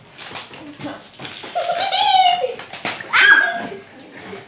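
High-pitched whining and squealing, without words, from girls with chocolate bars held in their mouths. There is a held whine about a second and a half in, and a shorter, sharper squeal near the end.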